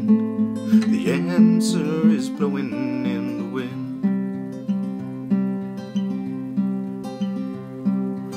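Steel-string acoustic guitar strummed in a steady rhythm, about three strokes every two seconds. A man's singing voice runs over it for the first half, then the guitar plays on alone.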